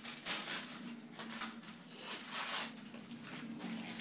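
Gift wrapping paper being torn and rustled as a present is unwrapped, in several short irregular bursts.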